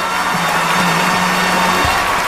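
Orchestral film music holding long low notes, with audience applause and cheering as a performer walks on stage.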